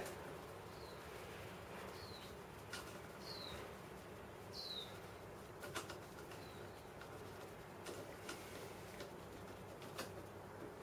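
Faint sound of a wire's ring terminal being fitted by hand onto a plasma cutter's front-panel connector, with a few small sharp clicks. Behind it a bird gives short high chirps that fall in pitch, about one every second or so.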